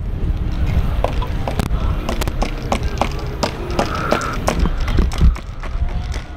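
Wind buffeting the microphone with a heavy low rumble, over irregular clicks and scuffs of walking on sand and handling the camera.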